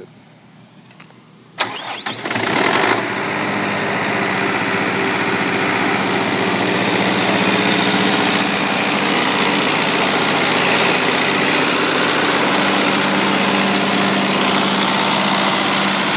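Kubota V3800 four-cylinder turbocharged diesel on a 45 kW generator set being started: the starter cranks about a second and a half in, the engine catches within a second, and it then runs steadily.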